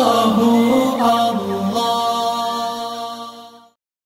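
Devotional vocal chant on the soundtrack, a single voice singing with bends in pitch, then holding a long note that fades out and stops about three and a half seconds in.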